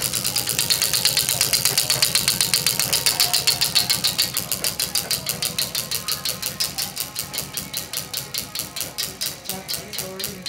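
Spinning 'Wheel of Fate' prize wheel, its flapper pointer clicking over the pegs. The clicks start fast and slow steadily to about four or five a second as the wheel loses speed, growing quieter.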